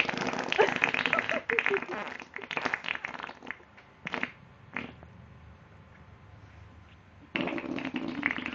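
Mouth pressed against a bare leg blowing raspberries on the skin in mock eating. A long run of buzzing splutters lasts about three and a half seconds, two short ones follow, then a quiet pause, and another run comes near the end.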